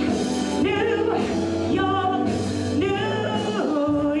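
A woman sings into a microphone over amplified musical accompaniment, her held notes wavering with vibrato over a steady bass line.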